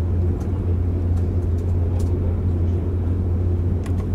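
Steady low rumble of a moving passenger train heard from inside the carriage, with a few faint clicks.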